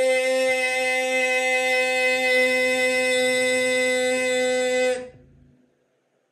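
One long note held at a steady pitch, stopping about five seconds in.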